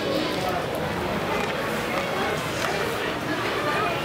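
Ice hockey arena sound: a steady murmur of crowd chatter around the rink, with a few faint knocks from sticks and puck on the ice.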